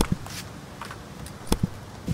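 Handling noises from work on a van during an oil change: a few light clicks and knocks, the sharpest about one and a half seconds in.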